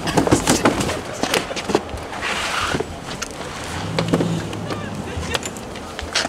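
People clambering into a van through its open door: scattered knocks and bumps against the body and seats, with clothing rustling and a brief scraping rush about two seconds in.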